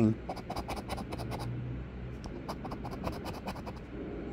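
A coin scratching the coating off a paper scratch-off lottery ticket in quick, repeated short strokes, with a brief pause midway.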